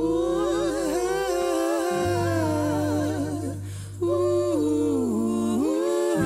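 A woman singing two long phrases with wide vibrato over a low held bass note. There is a short break between them, and the second phrase slides down at its end.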